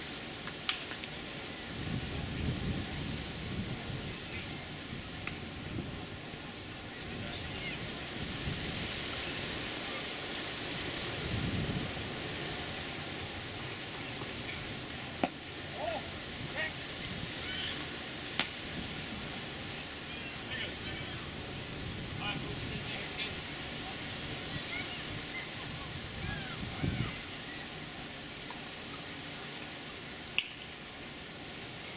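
Wind rumbling in gusts on the microphone over a steady outdoor hiss, with a few sharp pops of pitched baseballs striking glove or bat, about one per pitch.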